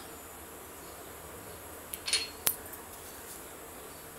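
A small glass bowl clinking against a hard surface: a short ringing clink about halfway through, followed half a second later by a sharper click.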